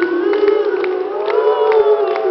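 A voice holding one long sung note that rises slightly and stays steady, over crowd noise with scattered claps.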